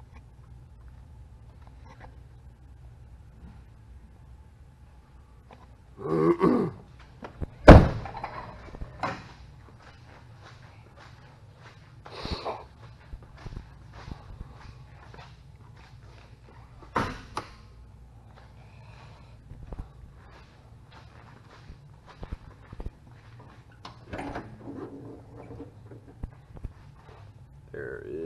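A vehicle door on a 1995 Toyota Land Cruiser Prado shut with one loud thunk about eight seconds in, followed by scattered lighter clicks and knocks.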